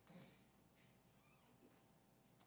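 Near silence: room tone, with a few faint, brief soft sounds near the start and around the middle.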